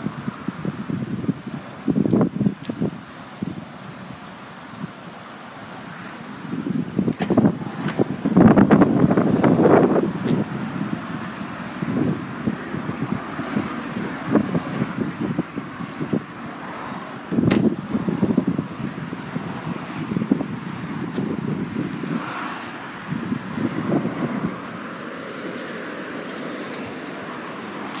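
Wind buffeting a phone microphone in irregular gusts, loudest about eight to ten seconds in, with a few sharp clicks along the way.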